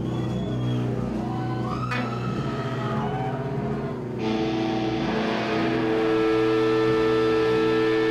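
Live doom-metal band: distorted electric guitars and bass holding droning notes, with a sliding rise in pitch about two seconds in. About four seconds in the full band, drums included, comes in louder on heavy sustained chords.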